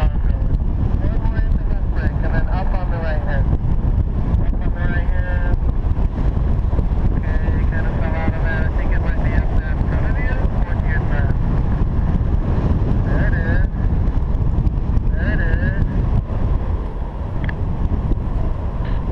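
Airflow buffeting the microphone of a camera flying under a paraglider, a loud steady low rumble, with brief faint warbling tones coming and going over it.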